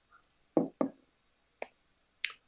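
Two quick knocks about a quarter second apart, then a fainter single click a little later, heard over a video call.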